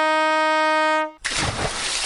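Brass fanfare sting ending on one long held horn note, which stops about a second in and gives way to a sudden burst of hiss-like noise that fades.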